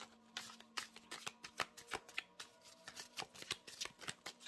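Osho Zen Tarot cards being shuffled by hand: a run of soft, irregular card clicks and flicks, several a second.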